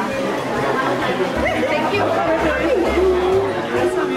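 Several people talking and laughing at once in overlapping chatter, with one voice holding a drawn-out tone over the last couple of seconds.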